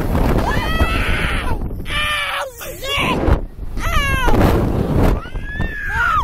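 Two women screaming as a slingshot ride flings them into the air: about four long, high-pitched screams that rise and fall, with wind rumbling on the microphone underneath.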